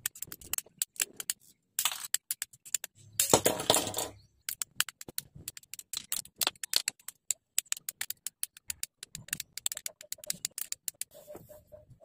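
Hobby nippers snipping plastic model-kit parts off their runners: a long irregular string of sharp plastic clicks and snaps, with a louder clatter of handled plastic about three seconds in.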